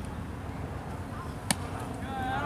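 A pitched baseball smacking into a catcher's leather mitt: one sharp pop about one and a half seconds in, over a low steady background noise.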